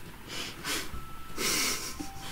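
A woman laughing softly under her breath: a few short, breathy puffs, the longest in the second half.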